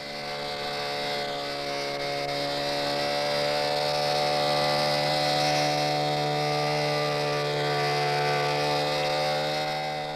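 The Hoverbarrow's small motor and air-cushion fan running steadily at one unchanging pitch as the barrow glides along, growing a little louder over the first few seconds.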